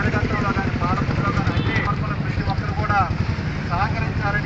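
Men shouting protest slogans in raised voices, over a steady low engine rumble like a motorcycle idling close by.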